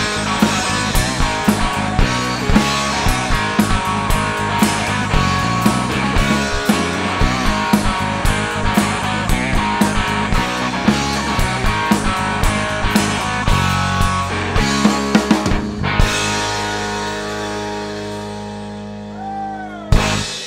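Live blues-rock trio of electric guitar, bass guitar and drum kit playing the closing section of a song with steady drum hits. About four seconds before the end the band stops on a held chord that rings out and fades, and a final hit comes at the very end.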